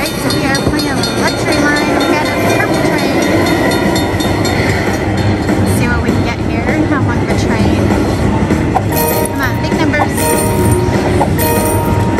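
Game audio of a 100 Car Train Luxury Line slot machine during its train feature: a cartoon steam train runs along with rail clatter. This is the sign that the 'Look Up' train bonus has triggered. A dense, steady mix of game sounds, with short bright sounds in the last few seconds as the car values are added to the total.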